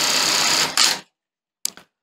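Industrial bartacking sewing machine running one bartack cycle: a dense burst of rapid stitching about a second long that stops abruptly, followed by one short mechanical sound about half a second later.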